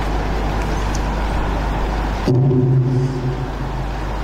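Steady loud noise with a low hum that cuts off suddenly about two seconds in, followed by a man's voice holding a low, steady tone.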